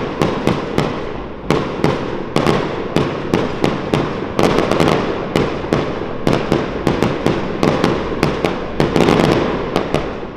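Aerial fireworks going off in rapid succession: sharp bangs about two to three a second over a continuous crackle.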